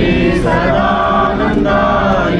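A group of voices chanting a devotional Hindu chant together in long held notes, with short breaks between phrases.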